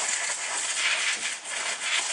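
Canned compressed air sprayed into a sewing machine's bobbin area, an unsteady hiss that swells and eases, blowing accumulated lint and dust out.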